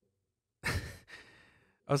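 A man sighs: one breathy exhale about half a second in, fading away over about a second, before he starts talking again near the end.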